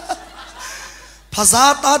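A man chuckling into a microphone, his laugh trailing off, then his voice breaking back in loudly about a second and a half in.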